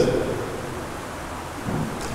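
A pause in a man's amplified speech: a steady hiss of background noise, with the tail of his voice dying away at the start and a faint short low sound near the end.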